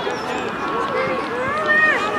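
Several voices calling out at once across an open playing field, from the players and the spectators along the touchline.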